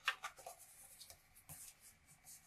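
Stiff paper cards sliding and being nudged by hand against plastic guides: short scraping rustles with a few light taps, the clearest just after the start and about one and a half seconds in.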